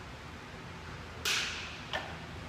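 A lifter's sharp, forceful breath as he braces in his deadlift start position: a loud hissing rush about a second in that dies away quickly, then a shorter one near the end.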